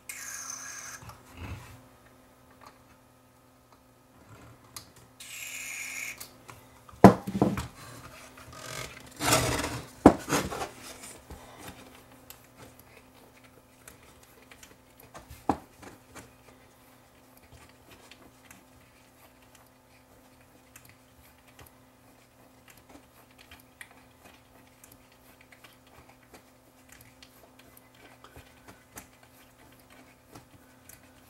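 Two short hisses of aerosol contact cleaner sprayed into the amplifier's control potentiometers, one right at the start and one about five seconds in. Then a few loud knocks and rattles as the metal amp plate is handled, and faint clicking as the control knobs are turned back and forth to work the cleaner in.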